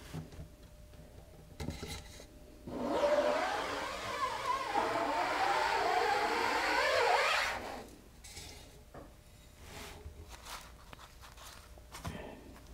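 Aluminium scoop coater drawn up the mesh of a tilted screen-printing screen, spreading photo emulsion: one steady scraping stroke of about five seconds, starting about three seconds in, with a wavering tone in it.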